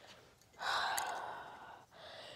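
A single long, breathy sigh, starting about half a second in and fading away over about a second.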